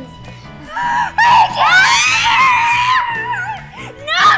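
A girl's high-pitched scream, about two seconds long, starting about a second in, over steady background music.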